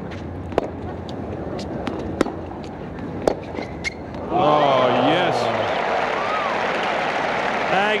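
Tennis ball struck by rackets in a rally: single sharp pops about a second apart over a low crowd murmur. About four seconds in, the crowd breaks into loud cheering and shouts that run into applause.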